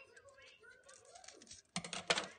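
Scissors snipping through folded paper: a few small, faint clicks and crisp cuts.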